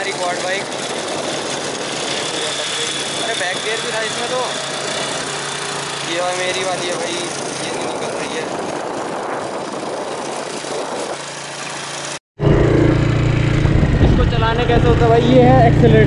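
Quad bike engines running with a steady noise and faint voices. After a sudden break about twelve seconds in, a quad bike's engine idles close by, louder and lower, as a man starts talking.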